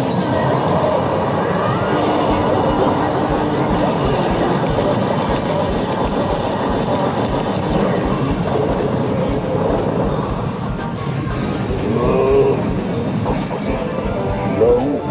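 Hokuto no Ken Battle Medal pusher machine playing its bonus-battle sound effects and music over a dense, steady din of clattering medals and other arcade machines.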